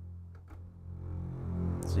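Sampled orchestral string basses holding a low note. The mod wheel rides the volume, so the note is soft just after the start and swells up toward the end.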